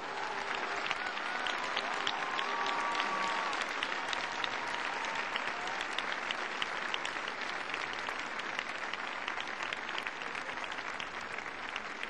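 A large crowd applauding: dense, many-handed clapping that builds over the first few seconds and then holds steady.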